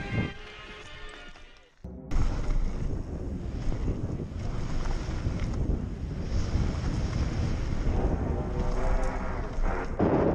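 Background music fading out, then, after a short cut about two seconds in, a mountain bike descending a gravel trail heard through a bike-mounted action camera: steady rushing wind noise on the microphone with the rumble of tyres over gravel.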